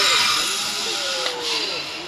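Zipline trolley running along a steel cable: a steady whirring hiss, loudest at the start and slowly fading as the ride goes on.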